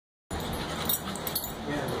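Two dogs play-fighting, with a dog's metal collar tags jingling in sharp clinks amid the scuffle.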